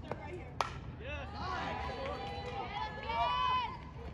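A softball bat striking the ball with one sharp crack about half a second in, followed by spectators' high-pitched shouting and cheering.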